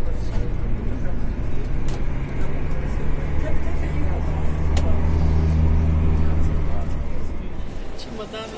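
Airport apron bus engine running with a low drone, heard from inside the bus cabin. The drone grows stronger through the middle and dies away shortly before the end. There is one sharp click about five seconds in.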